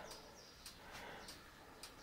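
Near silence: faint room tone with three faint, short clicks.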